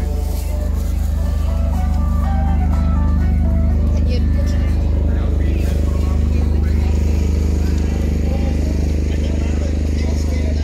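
Busy shopping-street ambience: crowd chatter and music, with a tune of stepped notes for a few seconds about a second in, all over a loud, steady low hum.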